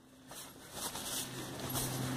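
Soft rustling of tent fabric and clothing as a person shifts about inside a small tent, over a faint steady low hum.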